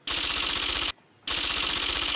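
Typewriter-style clatter sound effect as on-screen caption text types itself out: a burst of rapid clicking, a brief pause, then a second burst starting a little past halfway.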